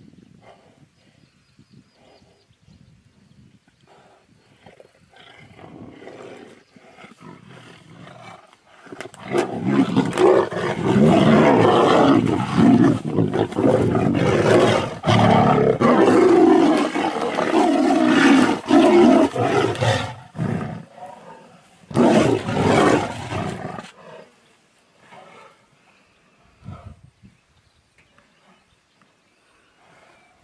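Two tigers roaring at each other as they fight. After a quiet start the roaring turns loud about nine seconds in and lasts roughly eleven seconds, then comes back in one shorter outburst a couple of seconds later.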